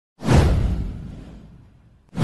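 An intro-animation whoosh sound effect with a deep rumble under it. It swells suddenly about a quarter second in, then fades away over about a second and a half.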